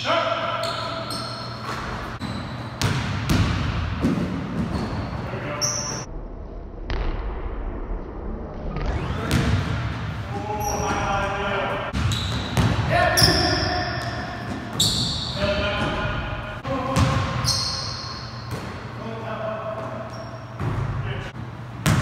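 Basketball dribbled and bounced on a hardwood gym floor during a pickup game, with scattered sharp thuds and short calls from the players, echoing in a large hall.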